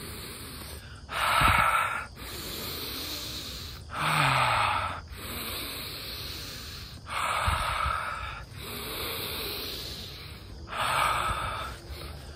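A man doing deliberate deep breathwork: four loud, rushing breaths of about a second each, roughly three seconds apart, each followed by a softer, longer breath.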